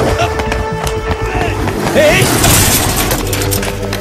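Action-film soundtrack: background music with held low notes mixed with sharp hit sound effects and voices shouting during a fight and chase.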